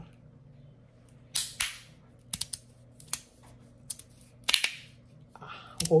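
Whirl magnetic fidget slider being slid back and forth: its blasted plates snap into place with about a dozen sharp clacks at uneven intervals, the loudest a little over a second in and about four and a half seconds in. The clacks are hard because the magnets are very strong.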